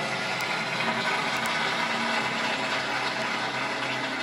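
Steady rush of running water with a faint low hum underneath, holding an even level throughout.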